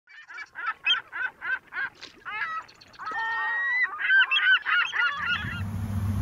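Birds calling: a quick run of short repeated calls, about four a second, then a busier stretch of overlapping calls. A low steady hum comes in near the end.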